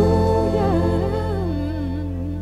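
Music with a wordless hummed vocal melody, wavering gently, over sustained low notes, growing gradually softer.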